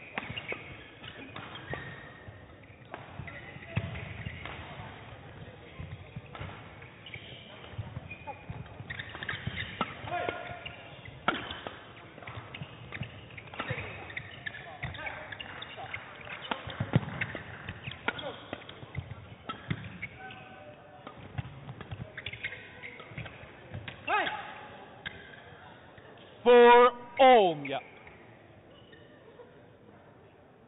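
Badminton rally: the shuttlecock struck back and forth by rackets, with players' footwork on the court and the echo of a sports hall. Near the end comes a loud, short shout that falls in pitch, just as the point is won.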